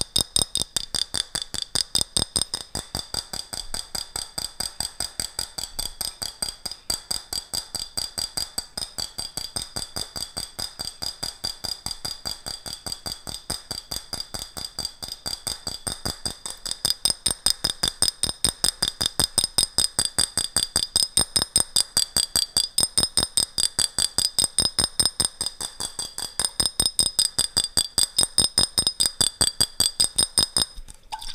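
Fingers tapping a glass jar close to the microphone in a fast, even rhythm of about five taps a second. Each tap leaves the jar ringing. The tapping grows louder a little past halfway.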